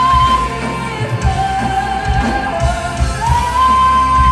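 Live rock band playing a progressive metal song: a female singer holds long sustained notes, stepping down and then back up in pitch, over electric guitar, bass guitar, keyboards and drums.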